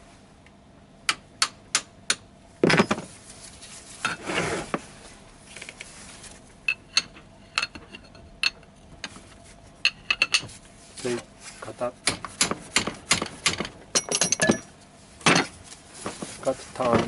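Metal tools tapping and clinking against a Toyota AE86 differential carrier, a string of sharp metallic taps, some ringing briefly. It is the sound of the side-bearing adjustment that moves the ring gear closer to the drive pinion to set backlash.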